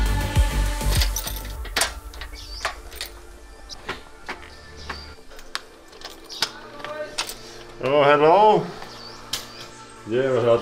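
Background music fading out over the first few seconds, then sharp clicks of a key working a door lock. About eight seconds in, a voice calls out briefly, its pitch wavering up and down.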